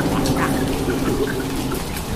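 Cartoon soundtrack rain and water effects: a steady wash of rain with small drips scattered through it, over a faint low steady tone.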